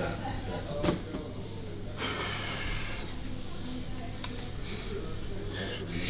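Indistinct background voices over a steady low hum, with one short click a little under a second in.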